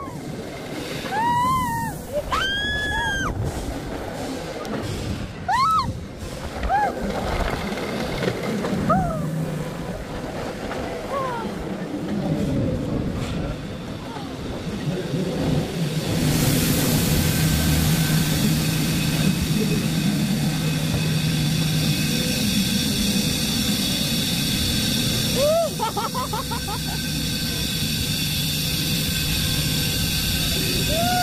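Riders on an amusement-park tower ride give several separate rising-and-falling shrieks and whoops over the first dozen seconds. About halfway through, a steady rushing noise with a low hum comes in as the ride runs, with one more short cry near the end.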